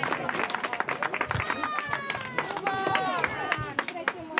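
Audience clapping, with high-pitched children's voices calling out over it from about a second and a half in.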